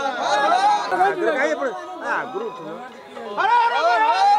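A group of men calling out and chanting together, their voices overlapping; the voices ease off about two and a half seconds in, then rise loud again near the end.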